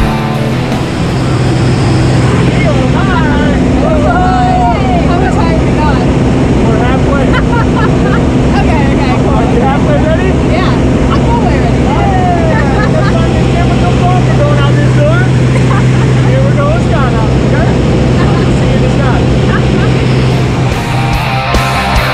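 A single-engine light aircraft's engine and propeller droning steadily, heard from inside the cabin, with people's voices and laughter over it. Music comes in near the end.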